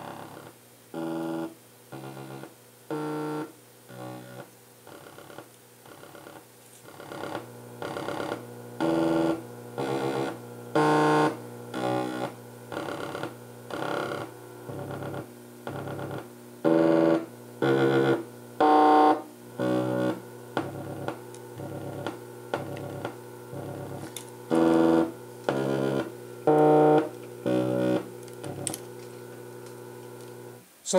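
Low synthesizer notes from a step sequencer, about two a second, run through a Zlob Modular Foldiplier wave folder. The notes change in brightness: some are mellow, others buzzy with many upper harmonics added by the folding.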